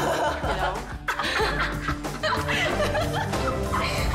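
Women laughing and chuckling over background music with a steady low bass line.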